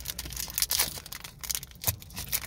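Foil booster-pack wrapper crinkling and crackling as fingers grip and work at it, in a rapid irregular string of small crackles with a sharper one near the end.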